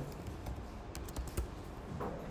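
Computer keyboard keys being tapped: several light, irregularly spaced clicks.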